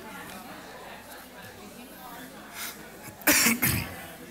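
A person coughing twice, loud and close together, over faint murmuring in the room near the end.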